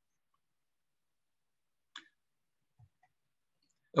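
Near silence in a pause of speech, broken by one short faint click about two seconds in and a fainter tick shortly after.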